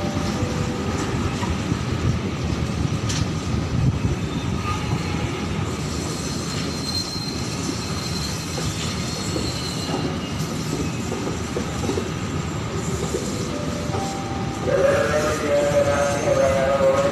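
Argo Cheribon train's executive and economy passenger coaches rolling past: a steady rumble of wheels on rails, with a faint high wheel squeal from about six to ten seconds in. A louder pitched sound joins near the end.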